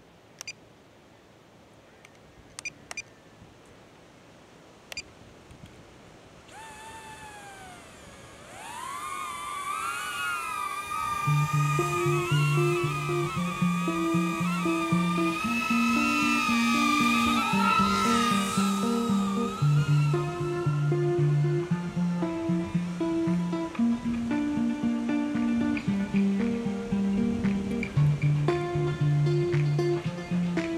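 A DJI Neo mini drone's propellers spinning up to a whine that wavers in pitch as it flies, starting about a third of the way in after a few faint clicks. Soon after, guitar background music comes in and is louder than the drone.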